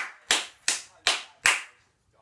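One person clapping his hands, a run of about five even claps a little under half a second apart, stopping shortly before the end.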